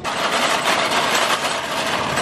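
Red metal wire shopping cart loaded with paper grocery bags rolling over pavement, a steady rattling clatter of the wire basket and wheels.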